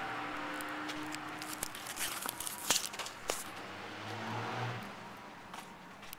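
Footsteps on a concrete sidewalk over a steady hum of car traffic, with a few sharp clicks around the middle.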